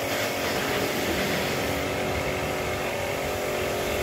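A steady motor hum over a constant hiss, with no change in pitch or level.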